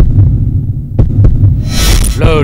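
Low, throbbing bass pulse of a dramatic trailer soundtrack, like a heartbeat, with a few sharp ticks. A hissing whoosh swells up near the end.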